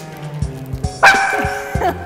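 Corgi puppy giving one drawn-out, high-pitched bark about a second in, over background music with a steady beat.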